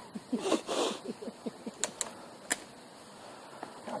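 A short rustle, then three sharp mechanical clicks about two seconds in, with a quieter stretch after.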